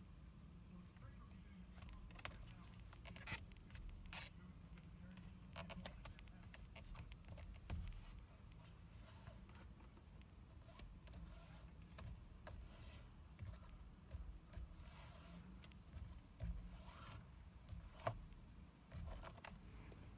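Faint, scattered small clicks and short scraping rustles of needle and thread being worked through a leather steering wheel cover by hand, over a low steady hum.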